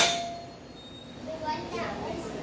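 A single sharp metallic clang at the start, ringing briefly before fading, with voices in the background toward the end.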